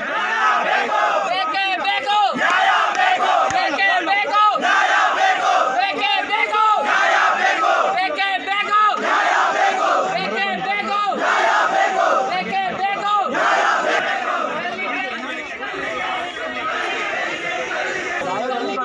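A crowd of men shouting angrily together in protest, many voices at once, loud and sustained, easing somewhat over the last few seconds.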